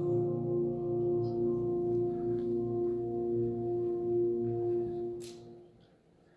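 A worship song's closing chord held steady on a keyboard, then fading away about five and a half seconds in, with a brief click just before the fade.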